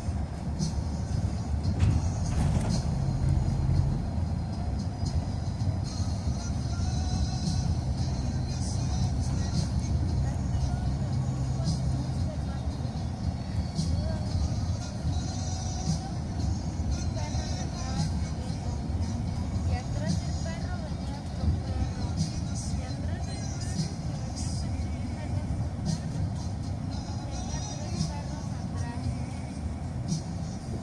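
Steady road and engine noise heard from inside a moving vehicle, with music and indistinct voices mixed in.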